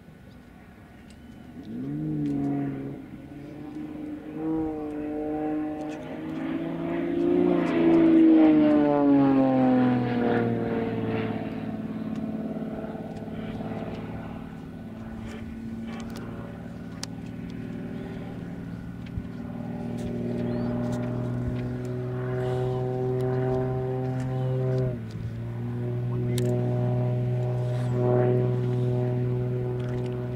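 Propeller-driven aerobatic monoplane's piston engine droning overhead as it flies manoeuvres. The pitch rises to a loud peak about eight seconds in, then glides down and holds steady. It dips abruptly about twenty-five seconds in before settling again.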